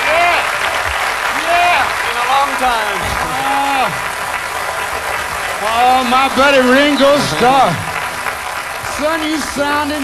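Audience applauding while a man talks over it through a stage microphone.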